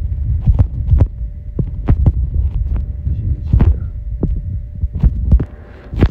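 A run of irregular sharp knocks, two or three a second, over a steady low rumble.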